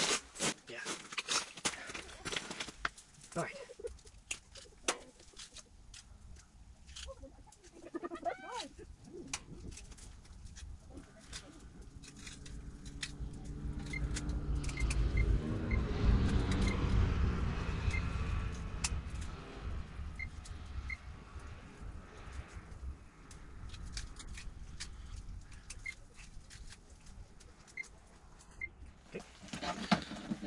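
Knife cutting burbot fillets into small chunks on snow-packed ice: scattered soft taps and clicks. A low rushing sound swells and fades in the middle.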